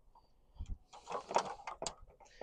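Handling noise of an electrical wire being pulled through by hand: after a quiet first second, about a second of scraping and rustling with several sharp clicks.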